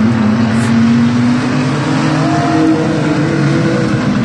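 A pack of mini stock trucks racing around an oval track, several engines running together at racing speed in a steady drone, with one engine's pitch rising briefly about halfway through.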